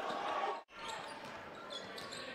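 Basketball arena ambience: crowd noise in a large hall with a basketball bouncing on the hardwood court. The sound drops out briefly just over half a second in.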